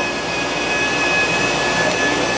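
Sunnen honing machine running steadily with a constant high whine, its mandrel honing the kingpin bushings of a Datsun truck spindle held on it.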